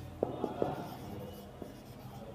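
Felt-tip marker writing on a whiteboard: short taps and strokes of the tip, three close together in the first second and one more near the end.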